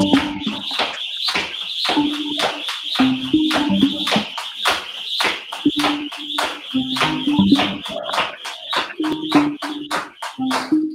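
Jump rope striking the rubber floor mat during double unders, a fast, even run of sharp slaps about three a second, over background music.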